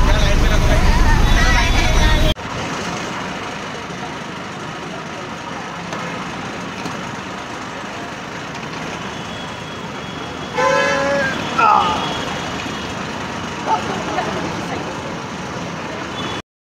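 Roadside traffic noise: a loud low rumble for the first two seconds that cuts off suddenly, then a steadier, quieter traffic hum. A short vehicle horn toot comes about ten and a half seconds in.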